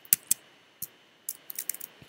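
Clicks from operating a computer: two sharp clicks near the start, another shortly before the middle, then a quick run of several clicks in the second half.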